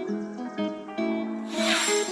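Background music of short, evenly changing keyboard notes, joined near the end by a loud hissing whoosh, a transition sound effect.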